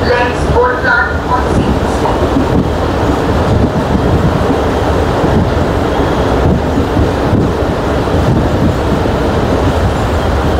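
Loud, steady running noise of a moving train, heard from on board.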